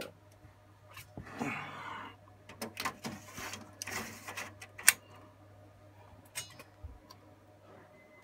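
Light metal clicks and knocks with two brief sliding scrapes, from handling the open drive bay of an HP ProLiant ML350p Gen8 server chassis.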